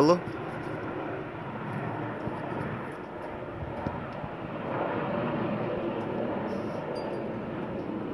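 Distant airplane passing overhead: a steady engine drone that grows a little louder a few seconds in, then eases off slightly.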